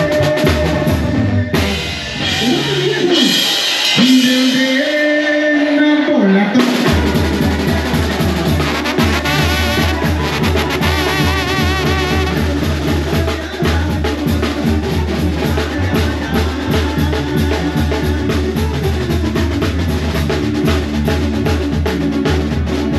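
Live regional Mexican band music: tuba, trumpets, trombone, drum kit and guitar. After a sparser stretch of held notes in the first seconds, the full band comes in about seven seconds in with a steady bass beat.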